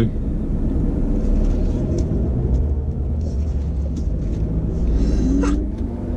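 Audi S1's engine and tyres rumbling steadily, heard from inside the cabin as the car is driven slowly onto a muddy parking field with traction control off.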